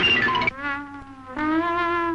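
A cartoon wailing cry in two long held notes, the second a little higher than the first, with a buzzy, nasal tone. A brief snatch of music comes just before it.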